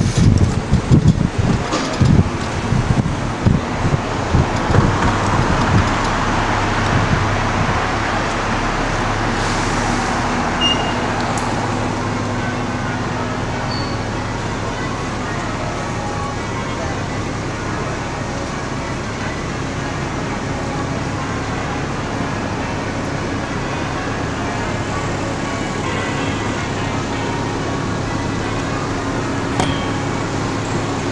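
Wind buffeting the microphone for the first few seconds, then the steady engine hum and road noise of a moving bus with surrounding street traffic, heard from the open upper deck.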